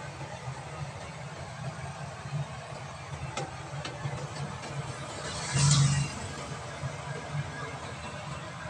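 Small vehicle's engine idling steadily, heard from inside the cab, with one short louder swell about five and a half seconds in.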